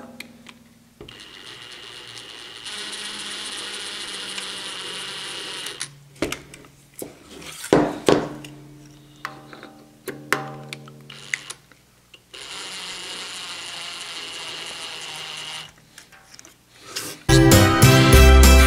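Compact brushless cordless drill spinning a ball-end hex bit, driving the vat frame's screws down until they are tight. There are two steady runs of a few seconds each, the first speeding up a couple of seconds after it starts, with clicks and knocks in between as the bit is moved to the next screw. Music comes in near the end.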